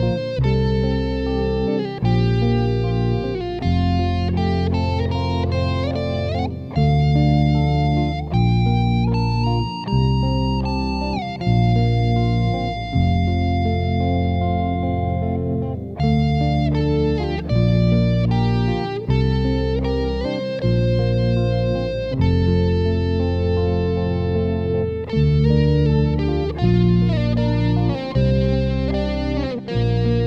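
Progressive rock instrumental: a sustained electric lead guitar line with notes bending in pitch over bass, the chords changing every second or two.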